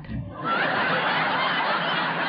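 Audience of many people laughing together, starting about half a second in and carrying on steadily.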